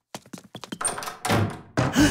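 Cartoon sound effects: a quick run of light taps and thunks, swelling into a louder noisy burst, then a character's gasp near the end.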